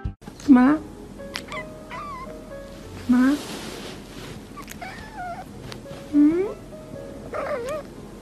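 A cat meowing repeatedly in short rising and wavering calls, about one every second or so.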